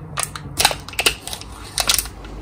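Foil seal being peeled off a Kinder Joy plastic cup: a series of sharp crinkles and crackles, loudest about a third of the way in and again near the end.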